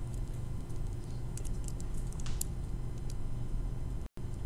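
A few light clicks and taps, bunched about one and a half to two and a half seconds in with one more about three seconds in, over a steady low hum.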